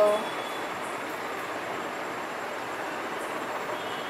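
Steady background hiss: an even, unchanging noise with no distinct events.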